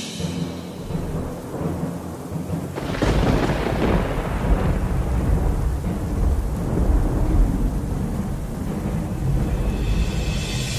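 Thunderstorm: steady rain, then a roll of thunder that breaks about three seconds in and keeps rumbling.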